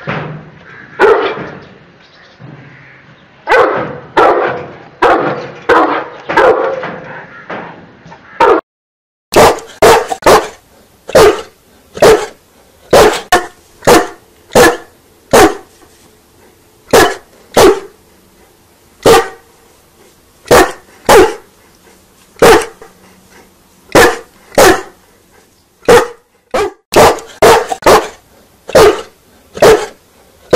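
Large dogs barking: first a run of deep, echoing barks, then after a brief break about nine seconds in, a different dog giving sharp single barks roughly once a second.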